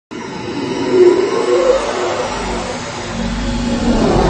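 Loud, dense roaring rumble of an intro sound effect under a production title card. It swells about a second in, and a deep low rumble builds toward the end.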